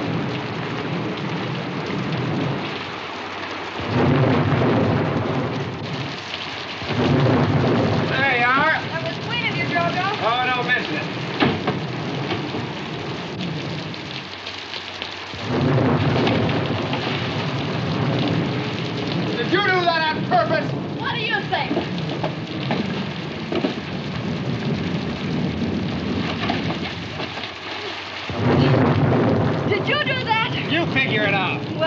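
Storm sound effect of steady heavy rain with rolling thunder that swells up several times. High wavering cries rise over the storm twice.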